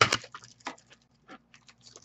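Hard plastic graded-card cases and plastic bags being handled: a sharp click at the start, a few more clicks and rustles within the first second, then only faint ticks.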